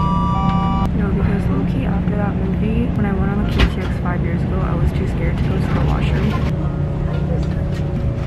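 Steady low rumble of a KTX high-speed train running, heard inside the passenger carriage. Right at the start a chime of three falling notes rings for about a second, and a voice follows.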